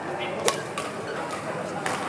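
Badminton rackets striking shuttlecocks: a sharp hit about half a second in and another near the end, over players' background chatter.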